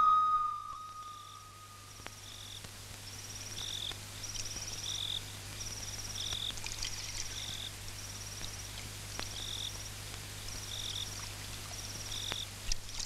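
Night ambience of calling insects: short trilled chirps repeating about once a second, higher and lower chirps alternating, over a low steady hum. A held flute note fades out in the first two seconds.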